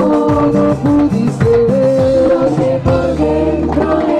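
A live band playing with amplified singing over keyboard, bass and drums, on a steady dance beat.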